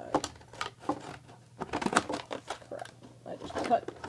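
Scissors cutting through stiff clear plastic packaging, which crinkles and crackles as it is handled and pulled open, in a run of short sharp snips and clicks that is busiest and loudest about halfway through.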